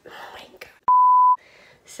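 A single censor bleep, a steady pure beep tone about half a second long that cuts in with a click and stops suddenly. It is laid over the word after a muttered "oh my".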